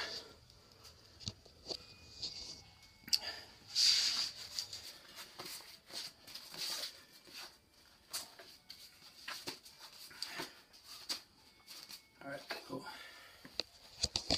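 Handling noise at a wooden table: a cloth towel rustling, with scattered light clicks and knocks, loudest about four seconds in. A faint steady high-pitched whine runs underneath.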